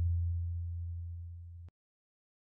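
A deep, low electronic tone from a title-card sound effect, fading steadily and then cutting off abruptly near the end, followed by silence.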